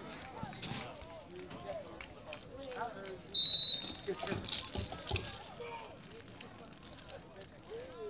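A single short, high, steady whistle blast about three and a half seconds in, over faint talk from the sideline crowd: a referee's whistle as the teams line up.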